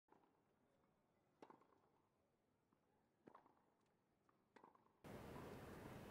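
Near silence broken by three faint tennis-ball strikes on a racket, about one and a half seconds apart. About five seconds in, a steady open-court ambience comes up suddenly.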